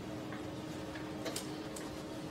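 Room tone with a steady low hum and a few faint, irregularly spaced ticks or clicks.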